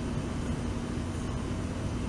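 Steady outdoor background noise: an even hiss with a faint low hum, no distinct events.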